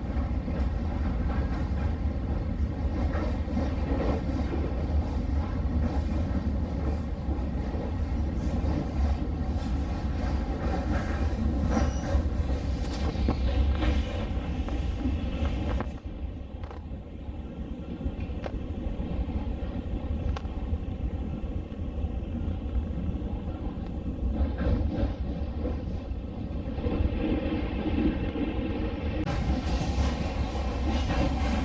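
Train running along the rails, heard from inside a passenger car: a steady low rumble with wheels clacking over the track. About halfway through the sound drops a little and turns duller.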